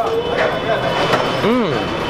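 A man's single rising-and-falling 'mmm' of enjoyment while chewing food, about one and a half seconds in, over a steady hum of busy-street noise.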